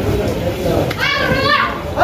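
Background voices of people talking, with a high-pitched voice, such as a child's, calling out for under a second about a second in.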